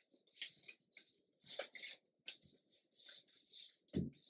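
Faint paper rustling: hands sliding and pressing a stack of book pages to square them up, in a series of short, soft scrapes.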